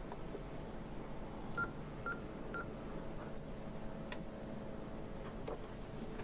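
Three short, identical electronic keypad beeps about half a second apart, followed by a couple of faint clicks.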